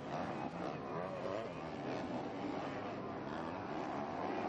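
Several motocross bikes' engines revving on the track, the pitch rising and falling as the riders work the throttle.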